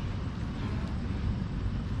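Steady outdoor background noise: a low rumble with a faint hiss and no distinct event.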